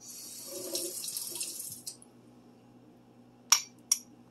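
Kitchen tap running for about two seconds, drawing water to add to the dough. Near the end, two sharp clinks of a metal spoon against a ceramic mug.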